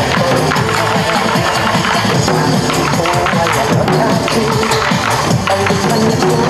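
Korean trot song playing loudly over a PA, with buk barrel drums struck in a rapid, steady rhythm along with it by a drum ensemble.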